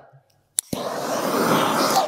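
Handheld gas torch lit with a sharp click about half a second in, then the steady hiss of its flame as it is passed over freshly poured countertop epoxy, warming it to help it flow.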